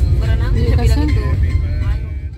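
Steady low rumble of road and engine noise inside a moving Suzuki car's cabin, with a person's voice heard over it.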